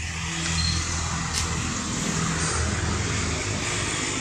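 A motor engine running steadily: a low hum under a broad hiss.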